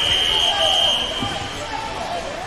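A whistle blown once: one steady shrill note about a second and a half long, over faint chatter in a large hall.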